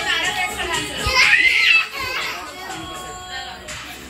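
Children's voices shouting and calling out at play, with one loud, high cry that rises and falls about a second in, then quieter chatter.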